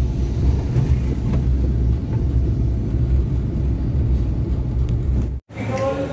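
Steady low rumble of a road vehicle's engine and tyres, heard from on board while it drives. It cuts off abruptly near the end.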